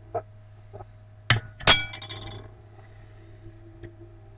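Spoon clinking against a bowl twice, the second strike louder and ringing briefly.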